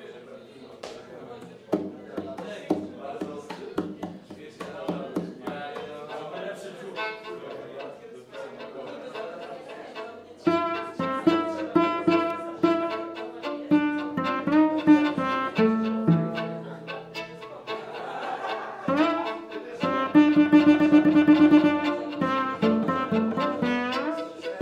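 Violin and cello duo playing jazz live: quiet, sparse notes for the first ten seconds or so, then louder bowed cello and violin phrases.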